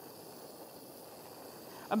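Handheld gas torch flame burning with a steady, fairly faint hiss while heating sterling silver jump rings to flow the solder.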